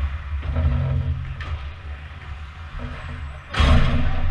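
Ice hockey rink during play: a steady low rumble with faint skate and stick noise, then near the end a loud, brief rush of noise close to the microphone.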